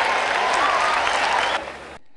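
Audience applause, a dense even clapping that dies away shortly before the end.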